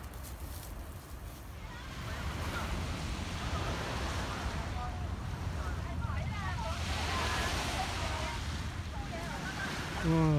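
Wind buffeting the microphone with a steady low rumble, joined from about two seconds in by the wash of small waves on a sandy shore.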